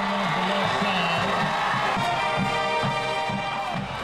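Music: a low melody stepping up and down for about two seconds, then a fuller held sound with a regular beat.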